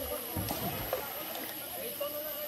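Indistinct voices of people and children bathing in a pool, over a steady background hiss, with a few soft low knocks about half a second in.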